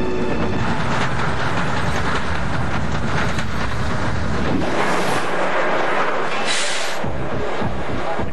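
Steel Dragon 2000's steel roller coaster train running at speed along its track: a loud, steady noise of wheels on rails during a top-speed test run. A brief high hiss comes about six and a half seconds in.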